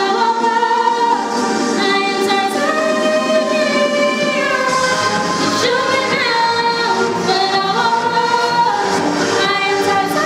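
Two women singing together through a microphone, holding long notes that glide from one pitch to the next.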